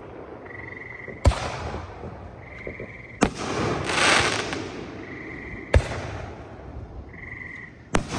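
Aerial fireworks going off: a sharp bang about a second in, another about three seconds in followed by a second of dense crackling, a third near six seconds and a fourth at the very end, each trailing off in echo.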